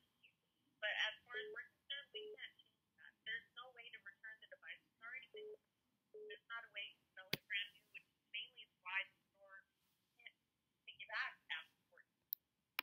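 A woman's voice speaking faintly over a phone line, thin and muffled with the top end cut off. There is one sharp click a little past the middle.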